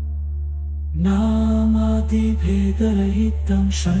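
Sanskrit stotram chanted by a single voice in slow, held melodic phrases over a steady low drone. For about the first second only the drone sounds, then the chanting voice comes in.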